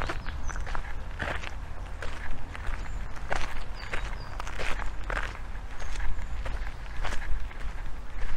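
Footsteps of a person walking on an outdoor park path at a steady pace, about one and a half steps a second.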